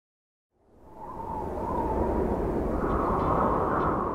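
Rising whoosh sound effect with a low rumble, building from silence about half a second in and swelling to a peak near the end.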